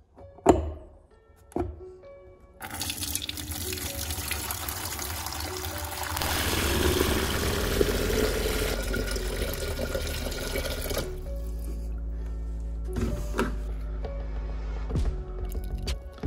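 Water running from a jug's spigot into a plastic pitcher. It starts a couple of seconds in after two sharp clicks, swells, then thins out about eleven seconds in. Background music plays throughout.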